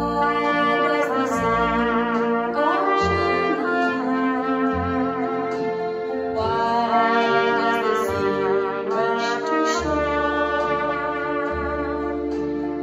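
Solo trumpet playing a slow ballad melody in long held notes over a recorded backing track.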